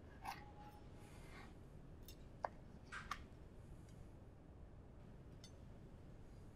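Chef's knife cutting through stuffing waffles on a wooden cutting board: a few faint crunches and taps, the sharpest about two and a half seconds in, over near silence.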